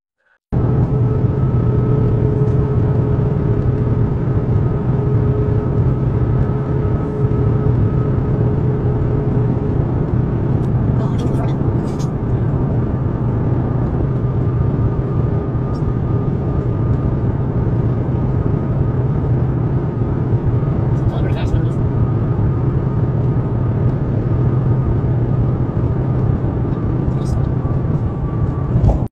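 Steady road and engine noise inside a moving car's cabin: a constant low rumble with a faint steady hum above it and a few light taps or clicks.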